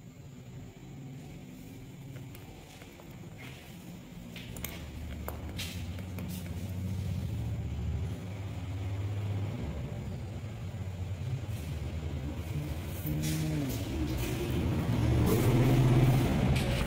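A low engine rumble that grows steadily louder, with a few light clicks.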